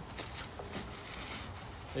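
A plastic trash bag being pulled open, with the cans inside it rattling against each other in a few short sharp clinks near the start and a soft rustle after.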